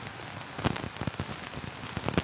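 Rain pattering on an umbrella over a live outdoor feed: a steady hiss with irregular ticks of single drops.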